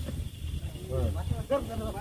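Several men's voices talking and calling out around a bull being held down on the ground, over a steady hiss and a low rumble.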